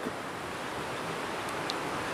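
Steady rush of running creek water, an even, unbroken noise with a faint tick near the end.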